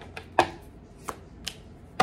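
Tarot cards being handled and laid down on a table: a few short, sharp taps, the first and loudest about half a second in.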